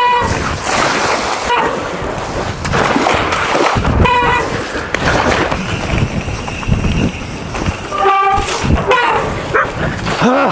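Mountain bike splashing through shallow water onto a paddle board and rolling over rough grass, a continuous rough noise, with a few short shouted exclamations near the start and about four and eight seconds in.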